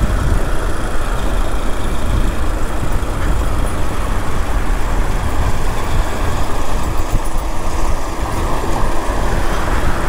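Honda NXR Bros 160 motorcycle being ridden: a steady rush of wind and road noise over the running single-cylinder engine.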